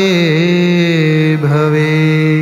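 A man singing a long, melismatic held note of a Sanskrit devotional chant, with steady musical accompaniment; the pitch wavers and slides to a new note about halfway through.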